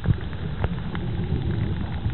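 Underwater sound picked up by a submerged camera: a steady low rumble with a few faint, sharp clicks scattered through it.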